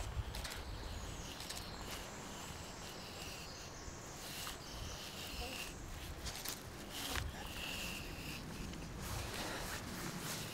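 Quiet outdoor background with a few faint scrapes and ticks as a knife cuts a horizontal line into the bark of a red cedar, the top cut for stripping the bark.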